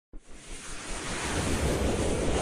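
Whoosh sound effect of an animated title intro: a rushing noise that starts suddenly and swells steadily louder.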